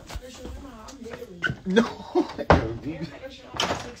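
Voices talking, broken by a few sharp knocks and thumps; the loudest comes about two and a half seconds in.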